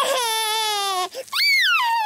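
A cartoon toddler's voice crying in protest at food offered to him: one long wail that falls slowly in pitch, then after a brief break a second wail that swoops up and back down.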